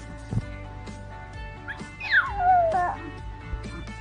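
Background music with sustained tones, and about two seconds in a baby's high squeal that falls in pitch over about a second.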